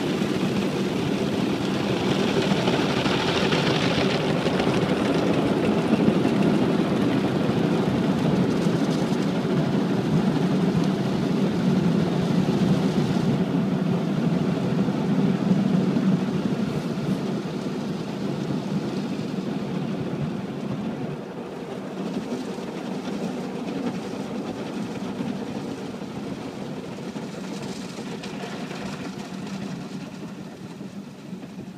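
Automatic car wash drying blowers running over the car, heard from inside the cabin as a loud, steady rushing drone that blows the water off the windshield. The sound thins out about halfway through and slowly fades over the last third.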